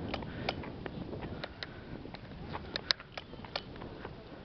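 Walking and handheld-camera handling noise: irregular light clicks and taps over a low rumble.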